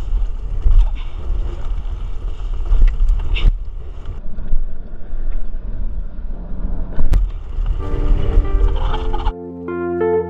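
Wind on an action-camera microphone and the rumble and rattle of a mountain bike rolling fast over a dirt trail, with a couple of sharp knocks. Near the end the ride noise cuts off and electric piano music comes in.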